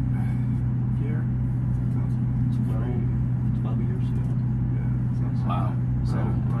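Steady low machine hum with no change in pitch or level, under faint, quiet talk.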